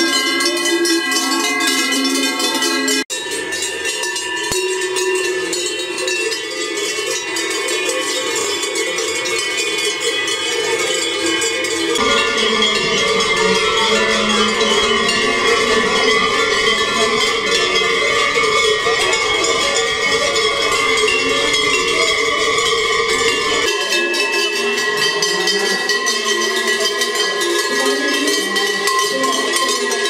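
Many large cowbells hung on the collars of walking cows, clanging continuously in a dense jangle of overlapping ringing tones. The mix of bells changes abruptly three times.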